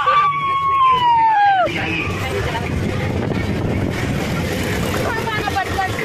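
A girl's long, high scream, sliding down in pitch and breaking off after under two seconds. It gives way to a steady rushing noise with faint voices as the ride swings.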